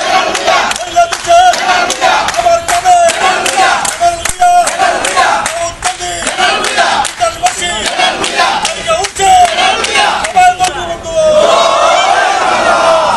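A crowd chanting political slogans together in a loud, repeating rhythm, with hand clapping mixed in. Near the end the chant gives way to a more continuous shouting of many voices.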